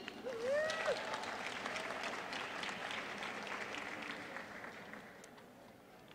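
Audience applauding, with a short cheer from one voice right at the start; the clapping fades out over about five seconds.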